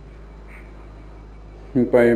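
A pause in a man's talk, holding only the faint steady hum and hiss of an old recording. His voice resumes near the end.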